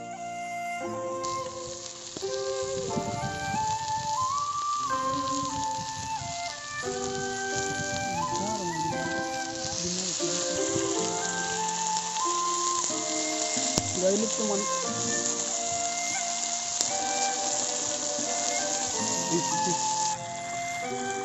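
Background flute music playing over the sizzle of fish frying in oil on a flat pan over a wood fire; the sizzle grows louder about halfway through, as oil is spooned over the fish.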